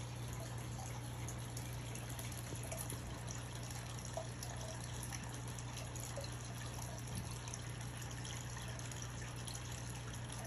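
Aquarium filter water trickling and splashing steadily into the tank, with a low steady hum beneath.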